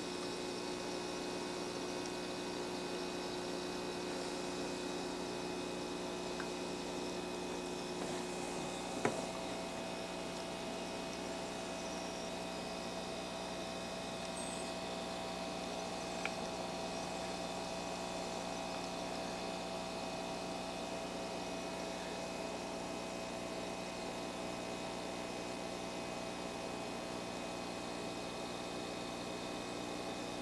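A steady mechanical hum made of several steady tones. A sharp click comes about nine seconds in, after which the pitch of the hum shifts, and a lighter tick follows about seven seconds later.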